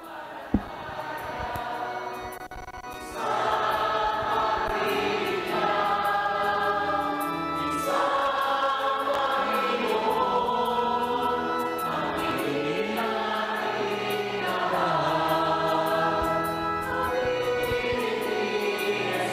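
A choir singing a slow hymn in long held phrases, played back from a video. It starts softly and swells into full voices about three seconds in. There is a single sharp click about half a second in.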